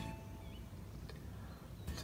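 Quiet lakeside ambience with a few faint, short bird chirps.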